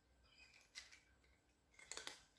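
Faint crunching of a cat chewing dry kibble from its bowl: a few short, crisp crunches about a second in and again near the end.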